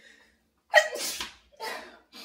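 A woman sneezes loudly with a sudden onset a little under a second in, followed by a shorter second burst.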